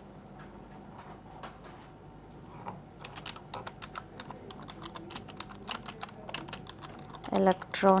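Typing on a computer keyboard: a run of short key clicks, sparse at first and coming quickly from about three seconds in.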